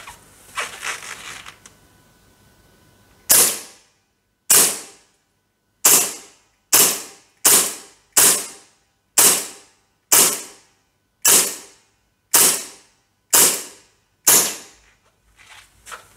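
WE Tech Beretta M92 gas blowback gel blaster firing twelve single shots into a chronograph, about one a second, each a sharp report. Faint handling clicks and rustles come before the first shot, about three seconds in.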